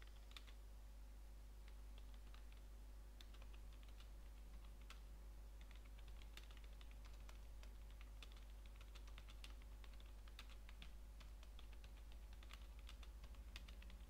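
Faint typing on a computer keyboard: quick key clicks in uneven bursts with short pauses, as a chat message is typed out.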